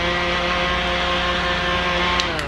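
Small handheld battery fan running at a steady speed: an even motor whine over a rush of air from the blades.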